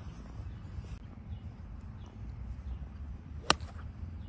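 A single sharp click of a golf iron striking the ball on a tee shot, about three and a half seconds in, over a steady low background rumble.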